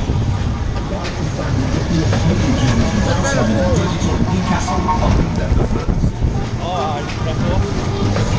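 Ski Jump fairground ride running at speed, heard from a seat on it: a loud, continuous rumble of the moving ride. People's voices call out over it about three seconds in and again near the end.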